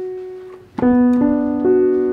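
Piano sound from a MIDI controller keyboard: a held note fades, then the three notes of a B minor chord are struck one after another, less than half a second apart, and ring together.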